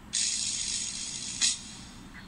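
A steady hiss lasting about a second and a half, ending in a sharp click, followed by a quieter pause.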